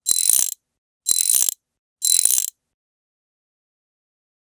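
Three short mechanical ratcheting sound effects, about one a second, each lasting about half a second with a few sharp clicks inside it.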